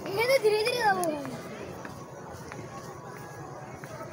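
A high-pitched voice calls out with gliding pitch for about the first second, then fades. After that only faint outdoor background remains, with a few light clicks.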